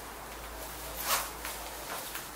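A brief rustling swish about a second in, over faint steady background hiss.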